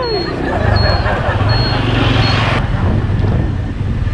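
Motorbike engine running with road and wind noise while riding: a steady low hum under a hiss that drops away suddenly about two-thirds of the way through.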